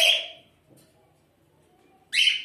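A budgerigar gives one harsh, chirping call that fades out about half a second in, followed by near silence.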